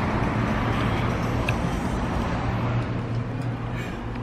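Steady road traffic noise: a low, even hum of vehicles on the street, easing a little near the end.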